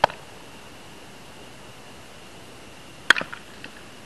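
Two sharp knocks of a baseball during infield fielding practice, one at the start and a louder one about three seconds in, the second followed by a few fainter ticks, over a steady faint hiss.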